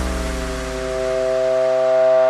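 Electronic dance music breakdown with no drums: a held synth chord slides slowly down in pitch while a deep bass note fades out.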